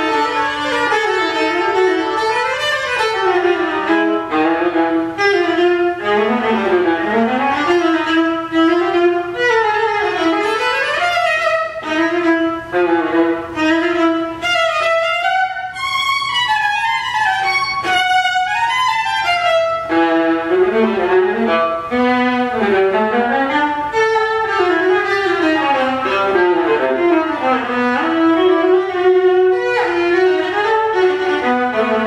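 A viola playing a continuous melodic line of bowed notes. Past the middle it climbs into a higher register for a few seconds, then comes back down to the lower range.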